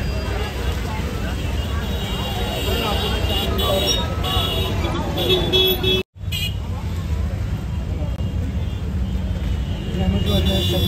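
Busy night street traffic: idling and passing engines make a steady low rumble under the chatter of a crowd, and a vehicle horn toots a little after the middle. The sound cuts out for a split second about six seconds in.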